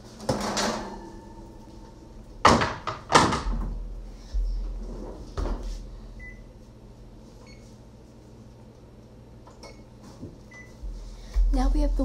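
A metal cookie sheet is pulled off the oven rack and the oven door is shut: a handful of clanks and knocks, the loudest two about half a second apart near three seconds in. These are followed by a few faint short beeps about a second apart.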